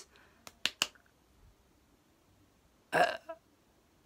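Mostly quiet pause with three short clicks under a second in, then a man's brief hesitant "uh" near the end.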